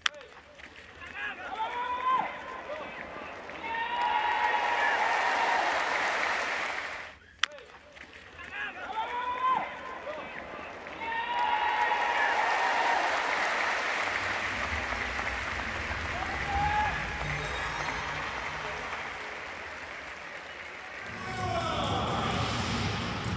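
Ballpark crowd clapping and cheering, swelling from about four seconds in and again from about eleven seconds in. A sharp crack of a bat meeting a bunted ball comes right at the start, and another about seven seconds in.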